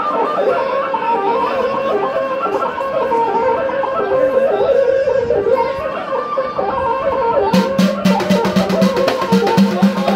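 Live folk music with a wavering melody line. About seven and a half seconds in, a hand-held frame drum joins with a fast, steady beat.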